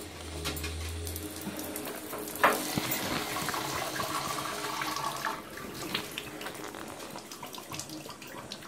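Bathtub tap turned on with a sharp knock about two and a half seconds in, then water running from the spout into the tub. The flow runs quieter from about five seconds on.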